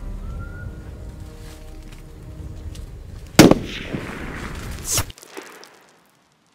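Soft film-score music, then a single loud gunshot about three and a half seconds in, ringing away afterwards. Near five seconds a short swelling whoosh cuts off abruptly into near silence.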